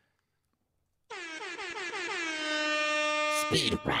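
An air-horn sound effect: one long blast that starts about a second in, slides down in pitch and then holds a steady note for about two and a half seconds, marking the switch to a new segment.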